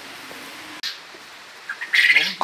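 Faint calls of farm poultry over a steady background hiss. A sharp click comes just under a second in, and a short squeaky sound rises near the end.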